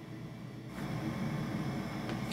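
Stepper motors of a scanning acoustic microscope's motorised stage running as a scan starts: a steady mechanical hum that grows louder about a second in.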